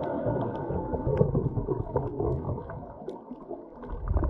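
Muffled underwater sound picked up by a camera in a waterproof housing: a low rumble of water moving past the housing, with scattered faint clicks, louder in the first half and easing off near the end.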